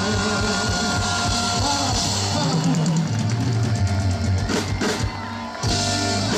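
Live band playing: electric guitar, keyboards and drum kit over a steady bass line. About five seconds in the music drops back briefly, then comes in again with a drum hit and cymbal crash.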